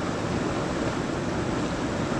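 Steady rush of a small river's flowing water.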